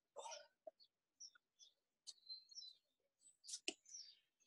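Near silence, with a few faint, short high chirps and a soft click near the end.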